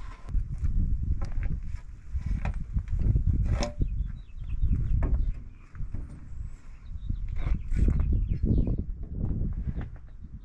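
A long wooden board being moved into place against timber roof framing: irregular low rumbling with a few sharp knocks.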